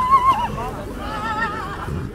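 Belgian draft horse whinnying: two quavering neighs, the first and louder one right at the start, the second about a second in.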